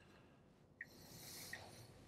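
Near-silent Tesla cabin with the turn-signal indicator ticking softly, twice, about three-quarters of a second apart, as the car signals for a turn on Full Self-Driving. A soft breathy hiss runs through the second half.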